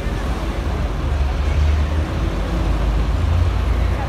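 Outdoor street noise: a steady low rumble of road traffic, with faint voices of people nearby.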